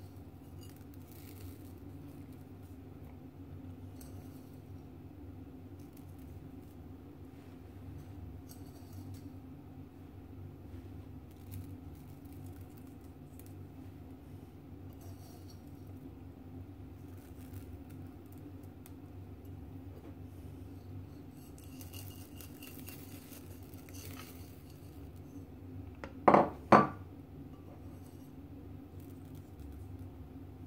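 Faint scattered ticks and clicks of sprinkles being picked from a ceramic bowl by hand and scattered onto batter in a metal baking tin, over a steady low hum. Near the end come two sharp clinks about half a second apart.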